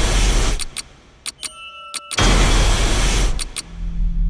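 Film-trailer sound effects. A loud rushing swell cuts off about half a second in, then come a few sharp clicks, one cluster carrying a brief ringing tone. A second loud rushing swell follows for about a second and ends in two more clicks.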